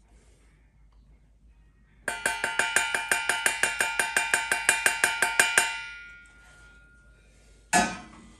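A steel cup tapped rapidly against a metal gold-weighing scoop to knock the dried gold out: about eight ringing metallic taps a second for three and a half seconds, with a ring that lingers after the tapping stops. A short click comes near the end.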